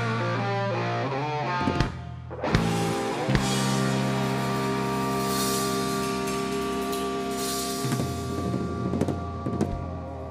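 Live instrumental rock from electric guitar, electric bass and drum kit. The band drops out briefly about two seconds in, then comes back in with drum hits and long, ringing guitar chords over the bass.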